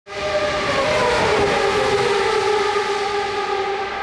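A racing engine running at high revs, a steady high pitch that dips a little in the first second, then holds and slowly fades.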